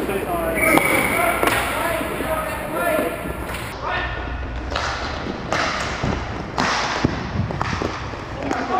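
Inline hockey play in a large indoor rink. Players shout during the first few seconds, then about halfway through comes a run of sharp clacks from sticks, puck and boards.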